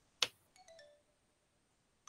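A sharp click, then a soft, short chime of a few notes stepping down in pitch: the Wordwall spinner-wheel game's sound effect as the landed segment is removed from the wheel.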